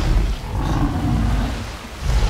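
Film sound effect of a giant water buffalo creature (the Sker Buffalo) giving a long, deep bellow over a low rumble as it rises from the water.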